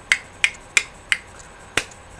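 Finger snapping: four quick snaps about a third of a second apart, then one more near the end.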